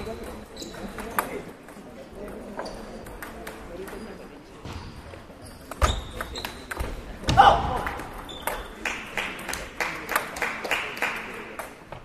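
Table tennis rally: the celluloid-type ball clicking sharply off rubber paddles and the table top, with more pings from other tables in the hall. A loud shout about seven seconds in, then a quick run of ringing ball bounces near the end.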